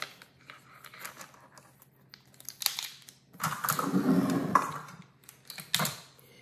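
Plastic measuring spoons clicking and a bowl of sugar being moved on a tabletop: a few short clicks, then a longer scraping rustle in the middle, with one more click near the end.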